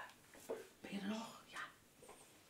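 Soft whispered speech in a few short bursts.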